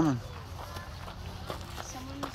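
Footsteps walking along a gravel track, with faint voices in the background.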